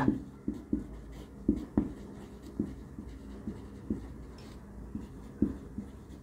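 Handwriting with a pen: a string of short, irregular taps and scrapes, fairly quiet.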